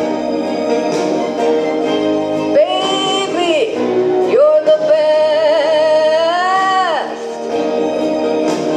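A woman singing into a microphone over instrumental accompaniment, holding long notes with a wavering vibrato and sliding between them. Her voice stops about a second before the end while the accompaniment continues.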